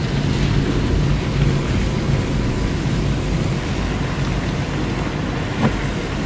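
Steady road and engine noise of a moving car heard from inside the cabin, a low rumble with hiss, with rain on the car.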